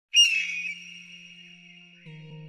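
Logo intro sound effect: a sudden bright, high-pitched tone that is loudest at its start and fades over about half a second into a thin ringing tail, with a quiet low hum beneath.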